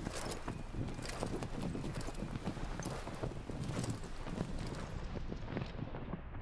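Anime soundtrack effects, not music: a rapid, irregular run of knocks and thuds over a low rumble, growing muffled toward the end.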